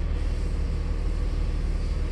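2000 Mitsubishi Eclipse GT's 3.0-litre V6 idling steadily, heard from inside the cabin as a low, even rumble. It is a smooth idle, with the engine running on a working alternator that is charging normally.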